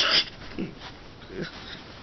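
A loud, breathy burst of laughter right at the start, followed by two brief vocal sounds that fall in pitch.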